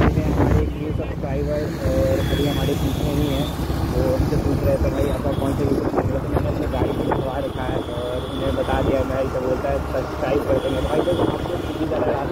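Riding a motorbike or scooter along a highway: steady engine, wind and road noise, with indistinct voices over it.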